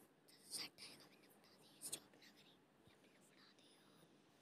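Near silence, broken by two brief faint sounds, about half a second in and just before two seconds in.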